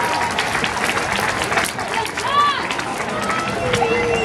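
Stadium crowd in the stands: overlapping chatter and shouts with scattered clapping. There is no band music.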